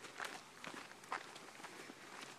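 Footsteps of people walking on a dirt and gravel trail, about two steps a second.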